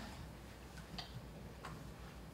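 Quiet meeting-room tone with a steady low hum and a few faint, irregular clicks.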